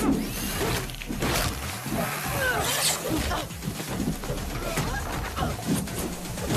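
Fight sounds: men's grunts, gasps and short cries mixed with several blows, thuds and crashes, over a low steady music bed.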